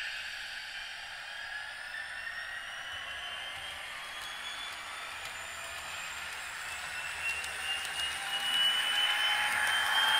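Diesel prime mover sound from a TCS WOWSound decoder in a model locomotive, played through its small onboard speaker, revving up after the throttle is opened quickly to a high speed step. Several tones glide slowly upward as it runs, and the sound grows louder near the end. In traditional throttle mode the engine notch follows the speed step with almost no momentum, so the engine sound climbs straight toward a high notch.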